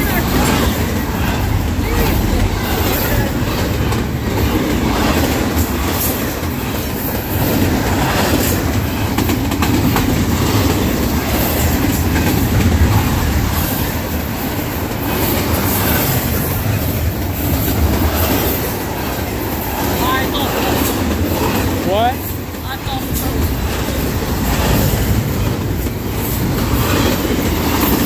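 Double-stack intermodal freight cars rolling past close by: a steady rumble and clatter of steel wheels on rail, with a couple of short rising wheel squeals about twenty seconds in.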